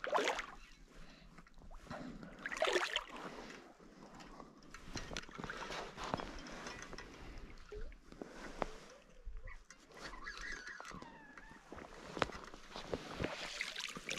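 Irregular splashing and sloshing of water as a small hooked steelhead, a 'skipper', thrashes at the surface while being played in on a spinning rod.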